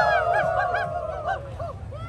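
Several people howling and yipping like dogs: long overlapping howls that fade out and give way to a string of short yips, with a new howl starting near the end.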